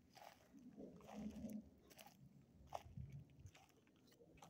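Faint, irregular crunching footsteps on a dry dirt trail strewn with pine needles and small stones.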